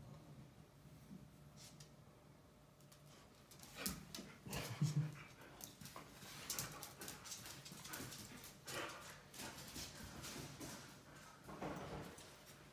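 Huskies playing with a cat, one dog whimpering softly, with scattered clicks and scuffles of paws on a tile floor that are loudest about four to five seconds in.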